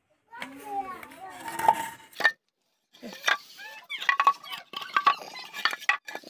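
Voices, with sharp clicks and clinks scattered among them; a brief silent gap just before the middle.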